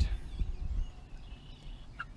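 Outdoor ambience: wind rumbling on the microphone, strongest in the first second, with faint high bird calls in the background.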